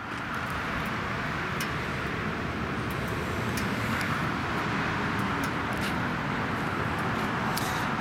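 Steady motor-vehicle noise: a continuous low rumble with a hiss on top, holding at an even level.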